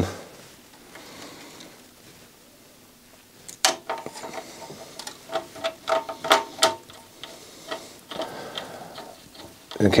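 Screwdriver turning a screw to fasten the CD drive mechanism down to the player's chassis: an irregular run of short clicks and ticks, starting about three and a half seconds in.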